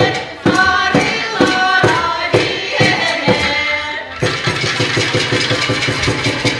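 Women's ensemble singing a Yakut song in chorus over a steady beat about twice a second. About four seconds in the voices give way to a low buzzing drone, typical of several khomus (Yakut jaw harps) played together.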